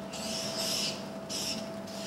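Marker pen rubbing across a paper sheet on a wall in two writing strokes, a longer one of about half a second and a shorter one about a second and a half in.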